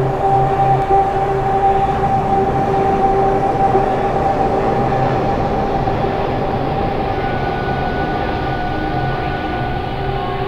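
Electronic music: a dense, noisy sustained drone with a few steady held tones. Its hiss slowly dulls over the second half.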